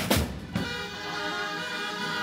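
A single firework rocket bang in the first half second, then background music with held notes.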